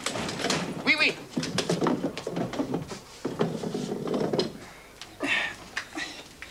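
Indistinct men's voices talking, with a few light knocks, thinning out near the end.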